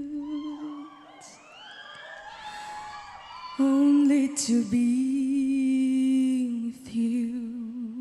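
A man humming along into a close microphone, holding long, steady notes with a slight waver. About one to three and a half seconds in the voice drops to softer, sliding notes before the loud held note returns.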